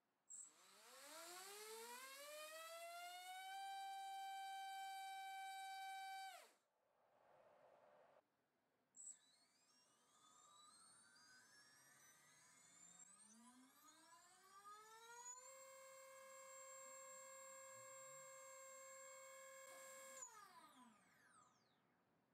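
MAD Racer 2306-2750KV brushless motor spinning up on a thrust stand twice, first with a 6040 propeller and then bare during a KV measurement. Each run opens with a short click, then a whine climbs in pitch for several seconds, holds steady at full speed and drops away quickly as the motor spins down. The second climb is slower and longer.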